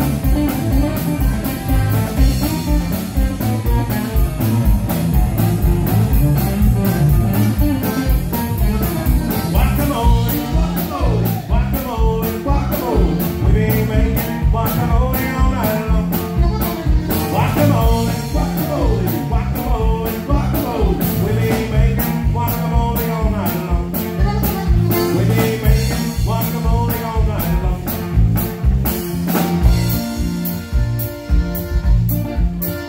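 Live Tex-Mex honky-tonk band playing loudly, with button accordion, guitar and a drum kit keeping a steady beat.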